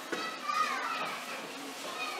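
Children's voices in a large hall, with one high child's voice rising and falling through the first second over a background murmur.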